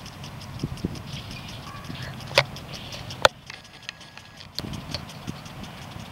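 Lawn sprinklers ticking rapidly and evenly as they turn, over a steady hiss of spray, with two sharper clicks a little after two and three seconds in.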